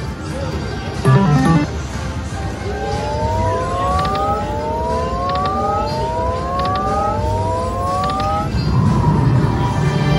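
Aristocrat Timberwolf slot machine's electronic game sounds during free spins: a short loud chime about a second in, then four rising electronic tones, one after another, while the reels spin. A chord-like win jingle follows near the end as the reels land.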